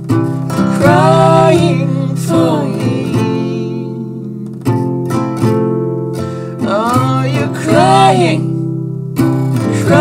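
Acoustic guitar chords ringing on, with wordless sung phrases that swell and bend in pitch several times over them.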